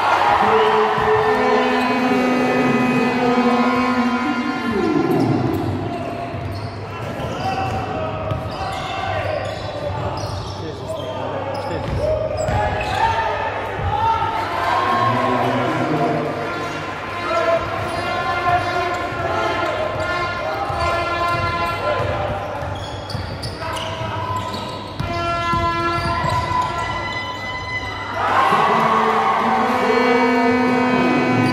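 A basketball bouncing on a hardwood court during live play in a large sports hall, with voices calling out. Long held, pitched tones come and go throughout, some of them sliding down in pitch.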